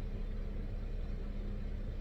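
Steady low hum of a car heard from inside its cabin while it sits still, with a faint constant tone running through it.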